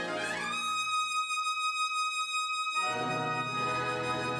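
Brass band music. A high brass instrument slides up to a single high note and holds it alone for about two seconds while the rest of the band drops out, then the full band comes back in.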